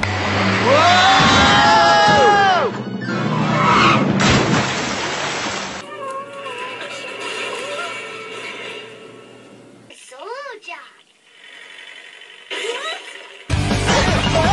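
Animated-show soundtrack: a character's long rising-and-falling cry over background music in the first few seconds, then quieter music with short effects. There is a sudden jump to a louder clip near the end.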